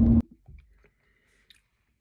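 Car cabin road and engine noise with a steady low hum, cut off abruptly a fraction of a second in. Then near silence with faint room tone, a soft sound about half a second in and a faint click about a second and a half in.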